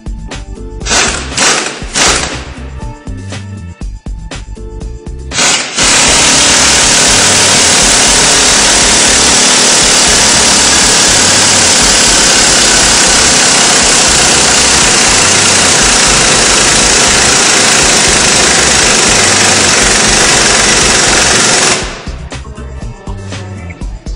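Power tool running on the threaded spindle of a coil-spring compressor, compressing the strut's coil spring. There are a few short loud bursts in the first seconds, then it runs steadily and loudly from about six seconds in until it stops near the end.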